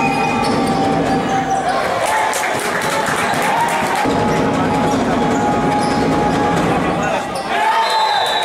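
Basketball being dribbled on a hardwood court, with sneakers squeaking and a steady background of voices from players and spectators.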